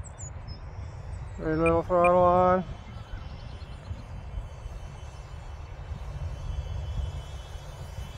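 Wind rumbling on the microphone, with a faint thin whine from a small electric RC plane's motor as it comes in to land. A man's voice sounds briefly about a second and a half in.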